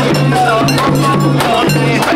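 Japanese shrine festival procession: metal clanging struck in a steady rhythm of about two beats a second, mixed with a crowd of mikoshi bearers' voices chanting and calling.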